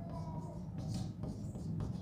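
Chalk scratching on a blackboard in short strokes as a line of figures is written, over a steady low hum.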